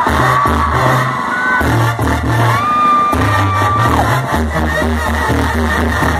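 Live banda sinaloense brass band playing an instrumental passage with no singing: trumpets hold a long note in the middle over a pulsing tuba bass line and drums, with crowd noise underneath.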